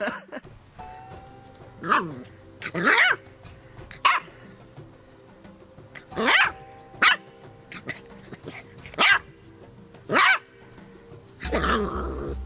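A dog barking over and over, short high barks that fall in pitch, every second or two, with quiet background music under them.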